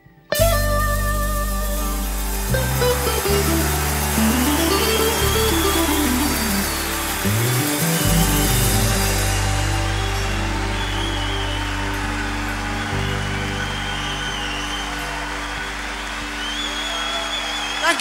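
Live band ending a slow rock ballad: sustained low chords that change every few seconds, under a loud wash of crowd cheering. The cheering breaks in suddenly a moment in and thins out after about nine seconds.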